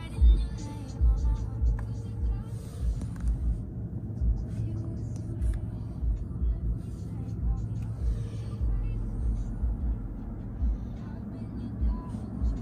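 Car audio system playing music and a voice inside the cabin, with irregular low thumps and a steady low hum underneath.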